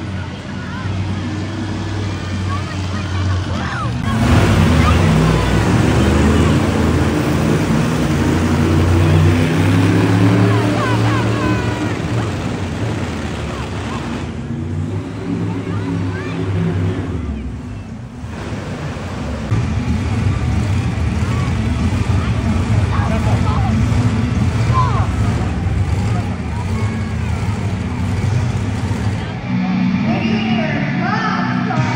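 Monster truck engines running and revving in an indoor arena, their pitch rising and falling, loud throughout. They get louder about four seconds in and ease off briefly a little past the middle, with voices over the top.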